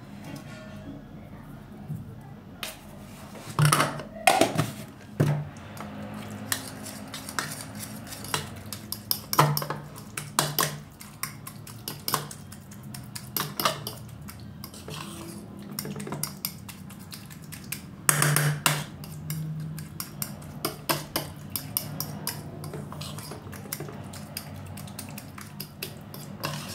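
Metal fork clinking and scraping against a ceramic bowl as avocado is mashed and stirred, in many short, irregular strokes over a steady low hum.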